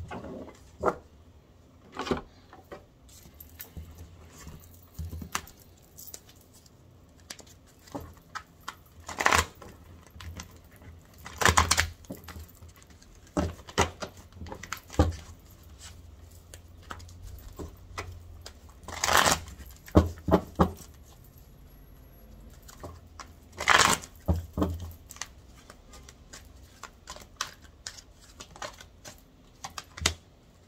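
A deck of affirmation cards being shuffled and handled by hand over a cloth-covered table: scattered soft riffles and taps, with four louder bursts of shuffling spread through.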